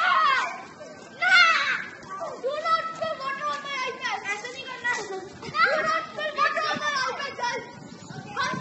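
Children's voices shouting and calling out as they play, the loudest calls near the start and about a second in.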